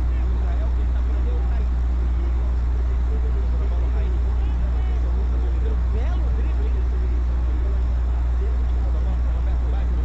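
Football match broadcast sound: a loud, steady low hum, with faint voices and crowd noise from the stadium over it.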